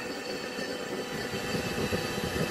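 Forced-air propane forge burner running steadily, its air blown in by a hair dryer: an even rushing noise with no breaks.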